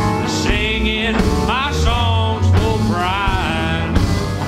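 Country band playing an instrumental break: a lead line of sliding, bending notes over upright bass and drums.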